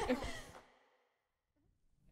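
A mixed a cappella vocal group's last sung chord dies away in the hall's reverberation within about half a second. Silence follows for about a second, then a faint low noise returns near the end.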